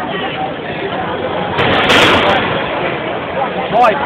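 Combat robot smashing into a desktop computer: loud crashing bangs, one lasting nearly a second about halfway through and a sharp one near the end, over a crowd of voices.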